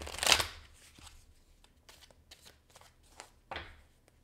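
A deck of tarot cards being shuffled by hand: a loud riffle in the first half second, then a run of light card flicks and snaps, and another louder shuffle burst about three and a half seconds in.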